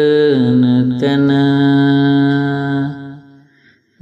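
A single voice singing a line of Sinhala folk verse (kavi) in slow, drawn-out chant style. It holds one note that slides down a little, then holds a second long note from about a second in, and fades out near the end.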